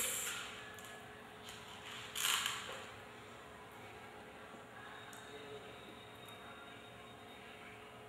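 Quiet room with faint handling sounds of small sand beads being picked up from a plate onto a needle, and one short rustle about two seconds in.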